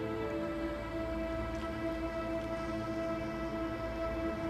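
Background music of long held chords, slow and sustained, with the upper notes shifting about half a second in and again about a second in, over a low rumble.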